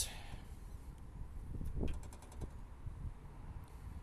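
Light clicks of a flat-tappet lifter being handled and drawn from its bore in an opened Honda GX140 crankcase: a quick run of small ticks a little under two seconds in, over a low steady rumble.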